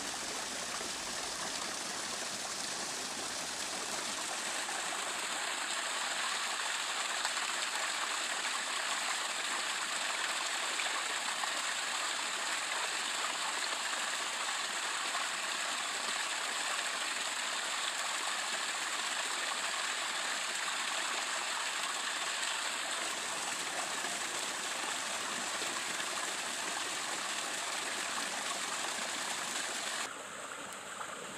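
Steady rushing of running water, an even wash of sound with nothing else standing out.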